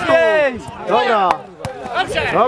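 A spectator's voice close to the microphone calling out loudly in two short phrases about a second apart.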